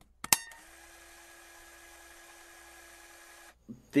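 Two sharp clicks in quick succession, then a faint, steady electrical-sounding hum over hiss that cuts off suddenly near the end.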